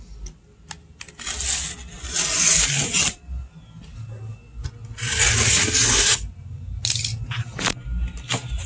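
A box-cutter slicing through the packing tape and cardboard seams of a shipping box in two strokes, one of about two seconds and a shorter one of about a second, with a few sharp clicks and taps between and near the end.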